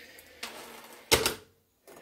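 Steel chainsaw chain rattling as it is set down on a workbench, with one loud metal clatter about a second in.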